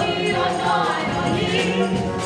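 Church choir singing a gospel song, many voices together.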